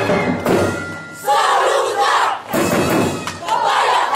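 A group of dancers shouting together in unison over drum-driven street-dance music. The group shouts come twice, a loud one starting just after a second in and another near the end, with drum thumps between them.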